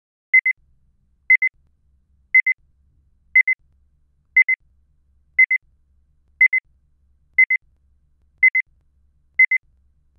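Electronic timer beeping a short high double pip once a second, ten times in a row, ticking off the answering time after a test question.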